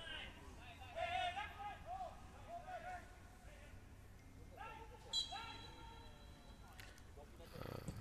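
Faint distant voices calling out across an open stadium, with a brief high tone about five seconds in.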